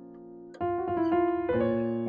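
Piano playing a B-flat minor chord broken into separate notes. A faint fading chord is followed by new notes struck about half a second in, and low bass notes join about a second and a half in.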